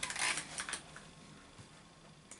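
Faint handling noise of over-ear headphones being picked up and put on: light clicks and rustling during the first second.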